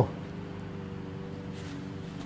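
Faint, steady background hum holding a few low, even tones, with no distinct event.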